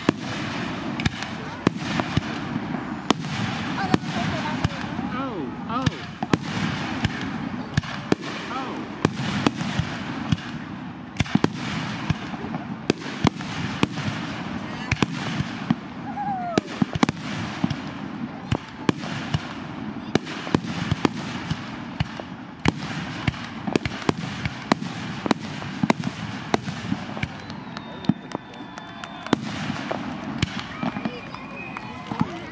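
Fireworks display going off: a rapid, irregular run of sharp bangs and crackles, several a second, over the murmur of onlookers talking.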